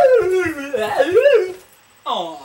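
A person's voice making a long, wavering, howl-like vocal sound that rises and then falls in pitch, with a shorter wobble before it stops about a second and a half in.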